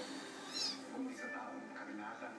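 A Persian-Siamese cross kitten gives one brief, high-pitched squeaky mew about half a second in while play-fighting with its littermate. People are talking in the background.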